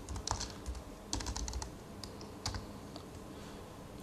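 Typing on a computer keyboard: clusters of key clicks in the first half and a single keystroke about two and a half seconds in.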